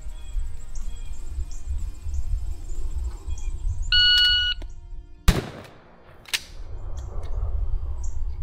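A shot timer's electronic start beep, held for under a second, then about a second and a half later a single 12-gauge shotgun blast, the loudest sound. A second, quieter sharp report follows about a second after the shot.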